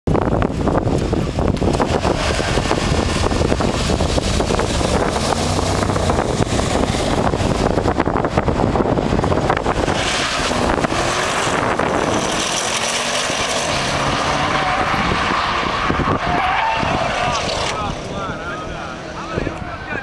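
Two Porsche twin-turbo V8s, a Cayenne Turbo and a Panamera Turbo, launching off the line under launch control and accelerating hard, pitch rising through several gear changes. The engine sound fades as the cars pull away near the end, with wind buffeting the microphone throughout.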